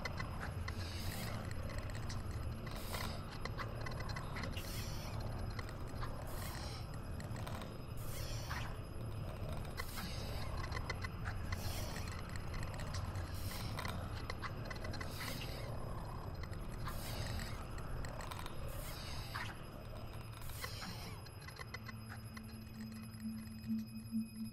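Ambient sound-design soundtrack: a short noisy swish repeating about every two seconds over a steady low rumble. Near the end the swishes stop and a steady low hum begins.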